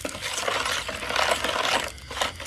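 Ceramic spoon stirring a liquid dressing in a plastic bowl, scraping and clicking against the bowl in rapid, continuous strokes.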